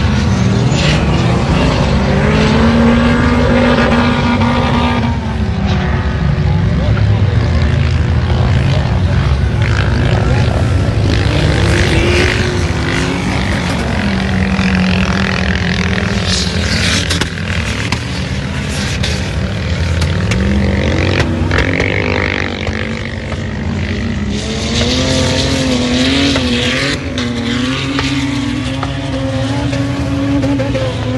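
Off-road 4x4 engines revving hard as the vehicles climb a sand dune, the engine pitch rising and falling again and again with the throttle.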